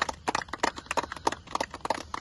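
A small group of people clapping their hands: a string of quick, irregular claps, with no speech.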